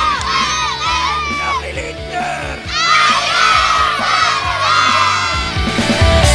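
A large group of children shouting and cheering together in two bursts. The first dies away about a second and a half in, and the second starts near three seconds in and fades just before the end. Music plays steadily underneath.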